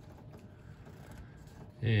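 Faint rustle and light clicks of glossy trading cards being slid from the front of a small stack to the back in the hands, with a man's voice starting near the end.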